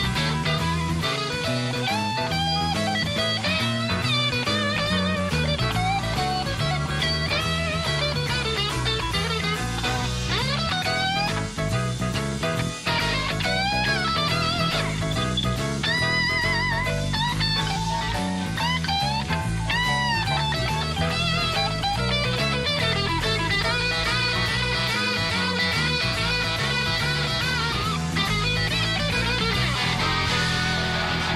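Live rock band in full flow, with an electric guitar playing a lead solo of bent, wavering notes over bass, drums and keyboards.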